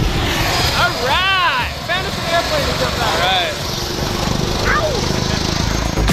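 Steady engine drone with wind rumble on the microphone, and voices calling out briefly a few times over it.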